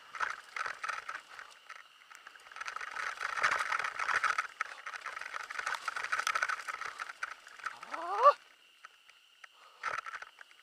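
Mountain bike riding fast down a dirt downhill trail: tyres running over packed dirt and loose stones, with the bike clattering and rattling in uneven bursts. Near the end a short rising squeal, the loudest sound, and then it goes much quieter.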